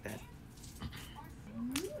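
A quiet pause in a woman's talk with a few faint clicks, then a short voiced sound from her that rises in pitch near the end.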